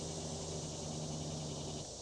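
Faint outdoor background: a steady low hum that stops just before the end, over a soft hiss.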